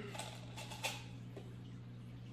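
A few light plastic clicks in the first second from the handheld Bean Boozled spinner being handled and spun, then only a faint steady low hum.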